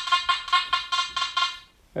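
Makro Gold Kruzer metal detector sounding a rapid run of short, high-pitched beeps, about five a second, as a tiny thin gold chain is swept back and forth over its small 7.5x4-inch coil in the FAST program: its target signal for the chain. The beeps stop shortly before the end.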